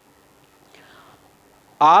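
A pause in a man's talk: a faint breath about a second in, then his speech resumes near the end.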